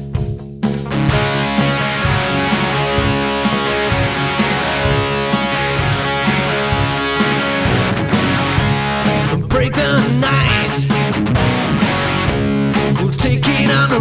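Instrumental passage of a rock song: a band with electric guitar, bass and drums playing to a steady beat. The full band comes in about half a second in.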